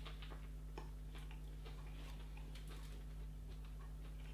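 Faint chewing of a mouthful of breaded chicken burger: soft, irregular clicks and crunches over a steady low hum.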